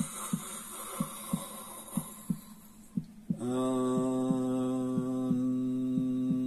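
Heartbeat-like thumps sound about once a second throughout. Over them comes a long breathy in-breath, then from about halfway a man's voice chants one long, steady mantra tone in time with the beats.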